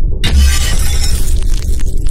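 Glass-shattering sound effect crashing in suddenly about a quarter second in, over music with a heavy bass.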